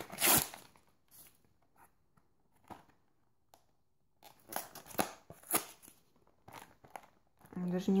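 Cardboard crispbread box being handled and fumbled at while trying to find how to open it: scattered rustles, scrapes and crackles, with a near-quiet gap of a couple of seconds in the middle and a busier run of crackling after it.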